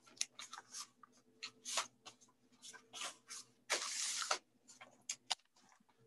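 Greeting-card crafts and a paper gift bag being handled: a run of short paper rustles and taps, with one longer rustle about four seconds in.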